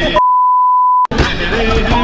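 Background music cut out by a single steady electronic beep lasting just under a second, with nothing else under it; the music resumes right after.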